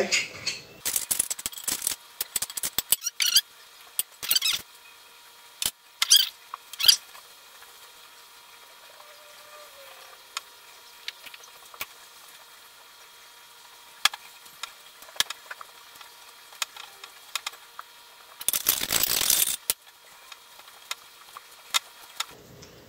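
Hands kneading crumbly chickpea-flour dough in a glass mixing bowl: scattered clicks and short scrapes against the glass, busiest in the first seven seconds and sparse after, with one longer scraping rustle about three-quarters of the way through.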